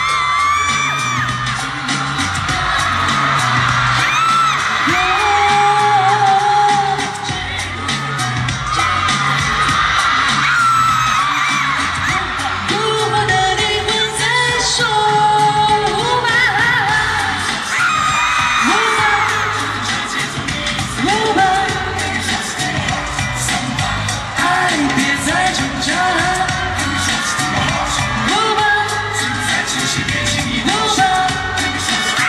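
Live pop concert sound: a woman singing over a loud amplified backing track with a pulsing bass beat, with high-pitched shouts and whoops from the audience.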